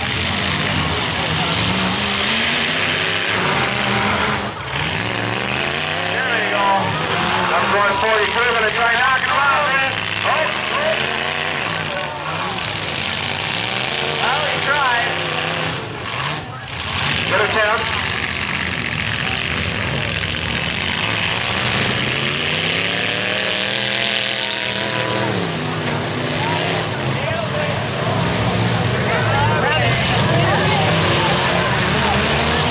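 Several demolition derby pickup trucks' engines revving up and down again and again as the trucks drive and ram each other, over a dense background of crowd noise.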